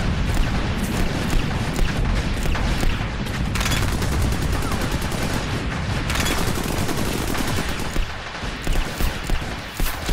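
Battle sound effects: dense, continuous rapid gunfire with deep booms underneath, breaking into separate louder shots near the end.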